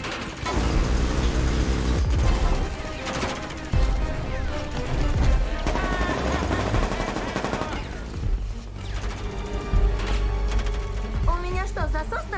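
Rapid bursts of automatic gunfire traded back and forth in a film action mix, over a music score.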